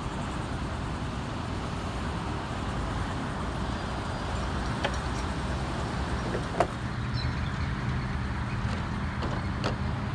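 Road traffic noise: vehicles running, with a steady low engine hum and a few brief clicks, the sharpest about six and a half seconds in.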